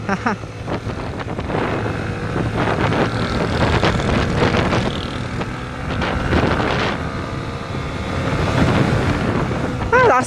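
Yamaha 150cc motorcycle engine running while riding, mixed with wind rushing over the microphone. The wind is strong, by the rider's account strong enough to push the bike about.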